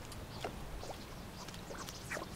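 Faint wind and water noise with a few short, faint bird calls scattered through it.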